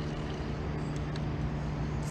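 An engine running steadily at constant speed, an even low hum that does not change.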